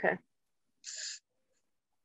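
One short breath into a microphone, heard as a brief hiss about a second in.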